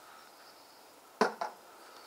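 Two sharp clicks about a second in, a quarter of a second apart, from a BFS baitcasting rod and reel being handled during a pitch cast, over faint background.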